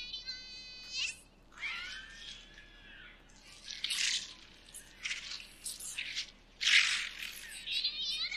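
Anime episode audio with the low end filtered out, so it sounds thin and high: a villain's warped, high-pitched voice, arching and wavering in pitch, broken by a few short hissy bursts, the loudest about seven seconds in.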